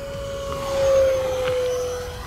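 Arrows F-86 Sabre RC electric ducted fan jet making a full-throttle low pass: a steady fan whine that grows louder to a peak about a second in, then drops slightly in pitch as it goes by.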